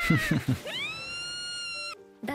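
A girl's high-pitched cartoon voice exclaiming "Ta-da!", the last syllable rising and then held long at a steady high pitch before it cuts off, with a few low thumps just before it.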